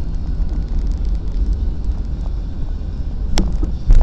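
Steady low rumble of a car driving, heard from inside the cabin, with a sharp click about three and a half seconds in and a thump just before the end.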